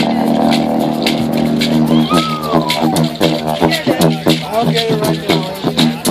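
Didgeridoo played live: a steady low drone for about two seconds, then a rhythmic pulse of about three beats a second with rising and falling vocal sweeps laid over the drone.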